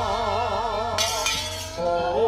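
Javanese gamelan accompaniment for a wayang orang battle dance: a sustained, wavering melody line over the ensemble, with one sharp metallic crash about a second in.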